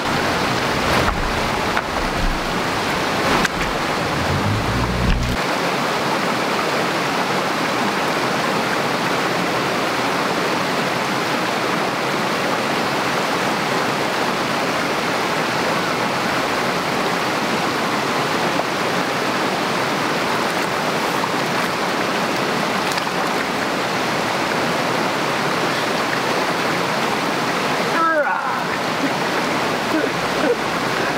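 Small mountain stream running steadily over rocks and a shallow riffle: a constant, even rush of water. A low rumble sits under it for the first five seconds or so, then stops abruptly.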